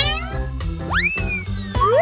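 Background music with a steady beat. Over it, a comic whistle-like sound effect rises sharply about a second in and then slides slowly down, with shorter rising swoops around it.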